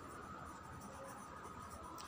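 Faint scratching of a pencil writing on a paper workbook page.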